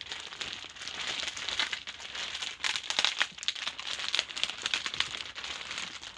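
Clear plastic bag around a dress preservation box crinkling and crackling as the box is handled and turned, in quick irregular crackles.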